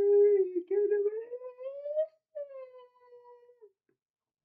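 A man singing unaccompanied, holding one long high note, then a second note that slides upward, eases back down and fades out shortly before the end.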